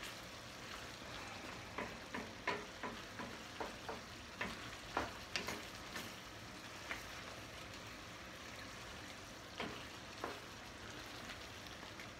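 Wooden spoon stirring pasta and sausage in a stainless steel skillet, knocking and scraping against the pan over a steady sizzle of the simmering liquid. The knocks come thick through the first half and thin out to a couple near the ten-second mark.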